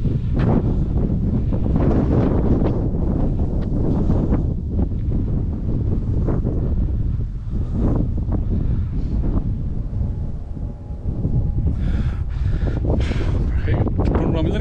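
Wind buffeting the camera's microphone, a heavy, uneven rumble that rises and dips with the gusts.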